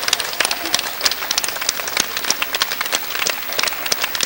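Audience applauding: a dense, irregular patter of many hand claps.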